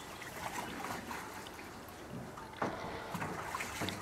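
Water trickling and splashing in a metal tub as a brown bear dips its head into it, with a louder splash about two and a half seconds in.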